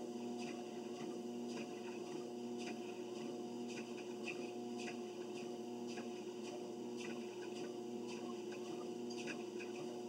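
Home treadmill running: a steady motor hum under regular footfalls on the moving belt, about two a second.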